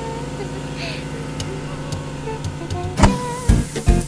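Cartoon sound effect of a small vehicle driving, a steady motor hum, broken about three seconds in by a sudden loud bang as its tyre goes over a nail and deflates, followed at once by music with a strong beat.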